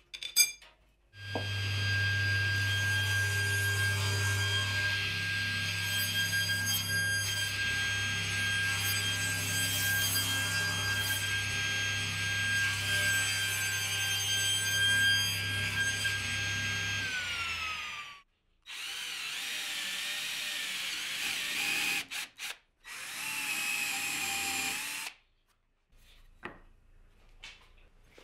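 A table saw running steadily with a low hum and a high whine while a wooden block is fed through it, then spinning down with a falling whine near the end of its run. A knock comes just before it starts. Two shorter runs of another power tool follow.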